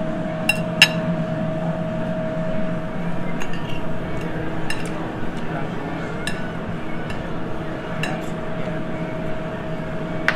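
Butter knife and fork clinking against plates as the meat is cut and eaten: a handful of sharp, irregular clinks, two close together about half a second in, over a steady background hum.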